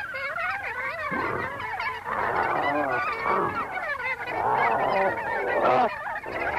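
A jumble of many overlapping cries that waver up and down in pitch, like a flock of fowl, growing louder toward the end.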